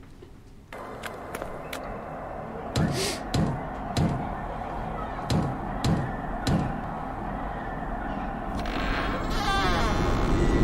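Knocking on a wooden door in two sets of three knocks, over a low, steady eerie background. Near the end comes a drawn-out creak as the door swings open.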